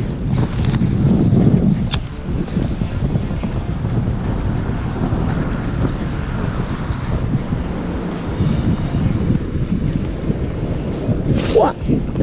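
Wind rumbling on the microphone, a steady low buffeting, with a single sharp click about two seconds in.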